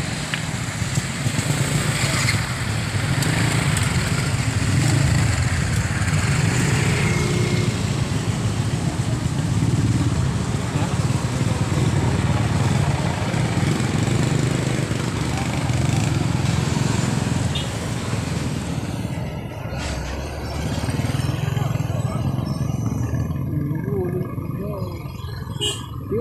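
Motorcycle engine running while riding along a road, a steady low rumble with wind and road noise over it. The higher noise eases off about 19 seconds in, as the bike slows.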